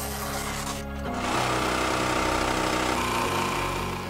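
Electric sewing machine stitching in one fast, steady run of about two and a half seconds, starting about a second in, over background music.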